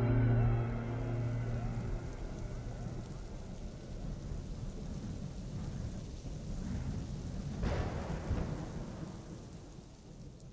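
The last notes of the background music die away in the first half-second, leaving a low, noisy wash like rain and thunder in the soundtrack. It swells briefly about eight seconds in, then fades out.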